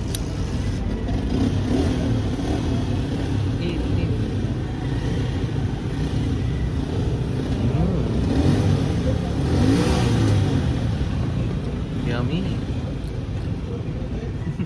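Street traffic: motor vehicle engines running and passing by, with a steady low rumble that swells louder around eight to ten seconds in.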